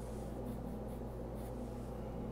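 Quiet room tone with a steady low electrical hum, broken by a few faint, brief rustles.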